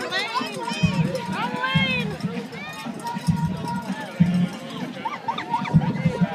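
Several spectators calling out and cheering in high, excited voices during a giant inflatable ball race, with a low rumble coming and going underneath.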